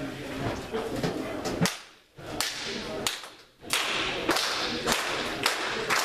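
Several sharp cracks, spaced about half a second to a second apart, with the sound cutting out briefly twice.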